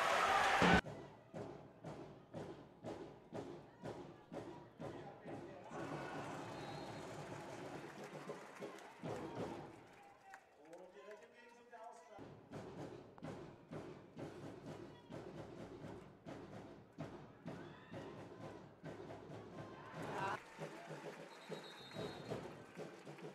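Faint handball arena sound from the spectators: a steady, rhythmic beat of thuds over crowd voices, with a short wavering call partway through.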